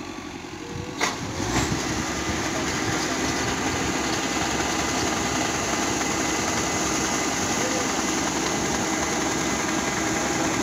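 Kubota combine harvester running steadily, a dense mechanical drone with a steady hum in it. A sharp click comes about a second in, after which it is louder.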